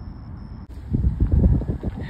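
Wind buffeting the microphone and road noise from a car driving along, beginning suddenly about two-thirds of a second in, after a quiet outdoor background.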